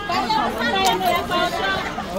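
Several men's voices talking over one another as a crowd moves along, with one brief sharp click about a second in.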